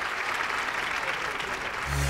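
An audience applauding steadily, with music starting just at the end.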